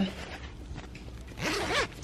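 Clothing and camera-handling noise: shirt fabric rustling and rubbing close to the microphone as the shirt is pulled open, with a short murmur from her voice near the end.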